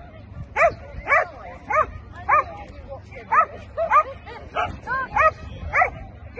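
A dog barking repeatedly, short barks about twice a second, around ten in all.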